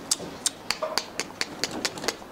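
Rottweiler puppies' claws and paws clicking and tapping on the stainless-steel bars of their pen: sharp, irregular clicks, about five a second.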